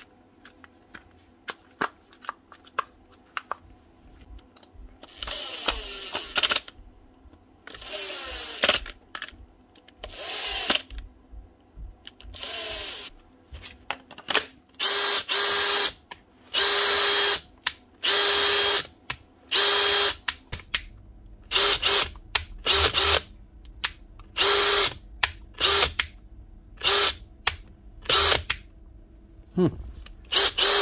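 Makita DHP459 brushless cordless drill run in repeated trigger pulls: a few longer runs that wind down in pitch, then about a dozen short quick bursts. It is a test run after a new gear change lever was fitted so the drive stays engaged, and it is working fine. A few light clicks of handling come first.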